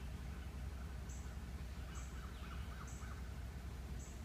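Outdoor ambience: faint bird calls, with a quick run of short calls about two seconds in and a brief high chirp about once a second, over a low steady rumble.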